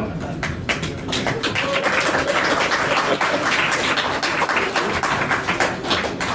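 Audience applauding. Scattered claps start about half a second in, build to a dense patter, and thin out near the end.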